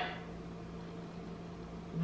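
Steady, faint hum with a low tone over a soft hiss: background room noise.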